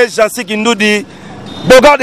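A man speaking into a microphone, in a language the recogniser did not write down, with a short pause about a second in where street traffic noise is heard.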